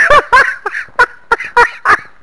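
A man cackling with laughter in loud, short, broken bursts.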